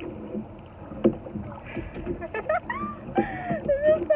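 Rowboat oars working in their oarlocks, with a sharp knock about a second in. In the second half a woman laughs and calls out over the rowing.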